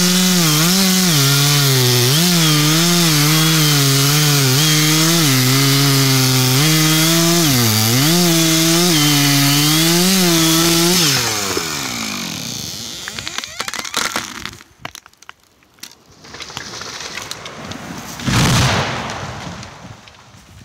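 Two-stroke chainsaw at full throttle cutting through the trunk of a large beech in the felling cut, its pitch dipping again and again as the chain bites harder. About eleven seconds in the throttle is released and the engine winds down; a few cracks follow, then near the end a loud crash as the beech falls to the ground.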